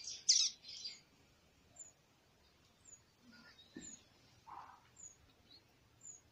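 A small bird chirping: a few louder high chirps in the first second, then faint, short, high, falling chirps about once a second.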